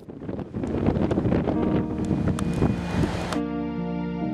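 Outdoor city noise with wind buffeting the microphone, ending abruptly about three and a half seconds in, when soft, slow keyboard music takes over.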